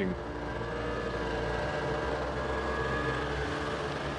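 Snowmobile engine running at a steady speed.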